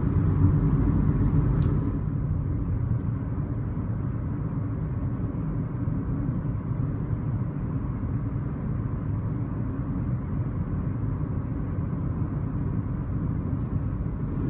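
Steady low rumble of road and engine noise inside a moving car's cabin, a little quieter from about two seconds in.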